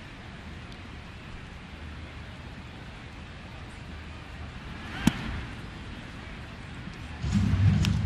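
Ballpark crowd murmur, with one sharp pop about five seconds in as a pitched baseball smacks into the catcher's mitt. Near the end a louder low sound sets in.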